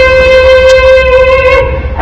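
A crowd of children and adults singing together, holding one long note that fades out near the end.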